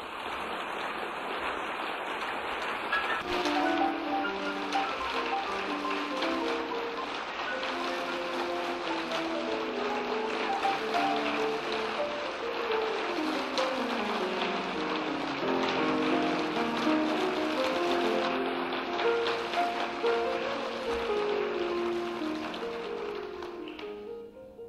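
Audience applauding over a solo piano that keeps playing. The clapping thickens about three seconds in, and the piano plays a descending run about halfway through.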